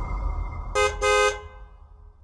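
A vehicle horn honks twice, a short beep and then a longer one, over a low rumble that fades away.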